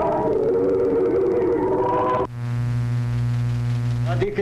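Unaccompanied Orthodox church choir singing a sustained chant. A little past halfway it cuts off abruptly into a steady low electrical buzz.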